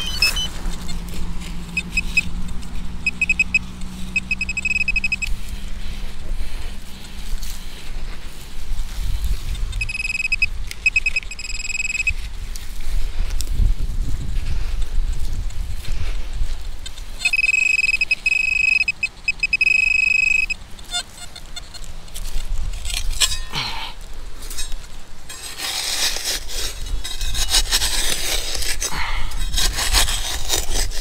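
An XP Mi-6 metal-detecting pinpointer sounding a high-pitched tone in three spells of two to three seconds each as it is probed in a dug hole, with low wind rumble on the microphone. Near the end, a digging tool scrapes through the soil.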